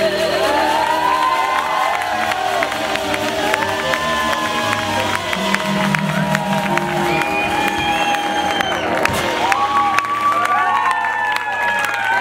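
A live band with bass, drums and saxophone sustaining the closing chord of a slow ballad, while the audience cheers, whoops and claps over it.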